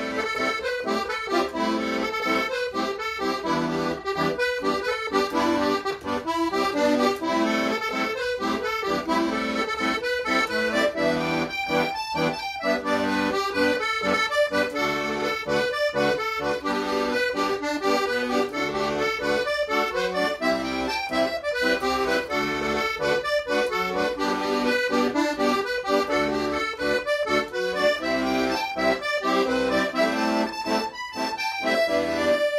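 Solo piano accordion playing a Scottish traditional tune: a continuous run of quick melody notes over held chords.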